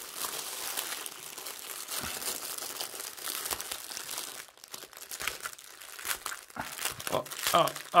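Plastic bags of diamond-painting drills crinkling and rustling as they are handled and shuffled, with a short lull about four and a half seconds in.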